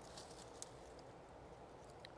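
Near silence: faint room tone with one small click about half a second in.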